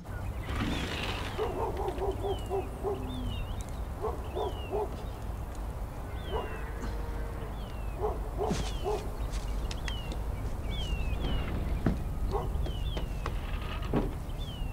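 Designed outdoor film ambience: small birds chirping with short falling calls throughout, over a low steady rumble. Quick runs of lower, repeated calls from another animal come and go, and a few sharp clicks and knocks fall in the second half.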